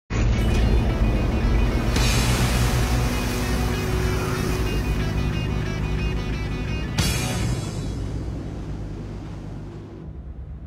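Loud film soundtrack music over the rushing of a battleship driving through the sea. It grows fuller at about two seconds, has a sharp hit at about seven seconds, then fades down toward the end.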